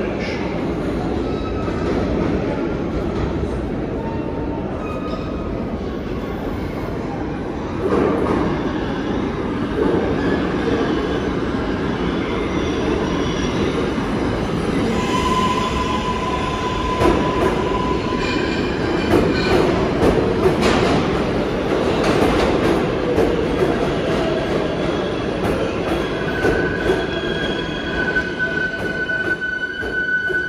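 New York City Subway R188 train cars running along a station platform, a dense steady rumble of wheels on rail that grows louder as the cars pass close. A short wheel squeal comes about halfway through, and a longer, higher squeal near the end.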